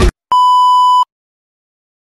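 A single steady electronic beep at about 1 kHz, lasting about three quarters of a second and cutting off abruptly, between a sudden stop of the music and a stretch of silence.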